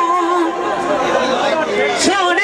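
A man's amplified Punjabi dhola singing voice ends a long held note about half a second in, followed by voices chattering.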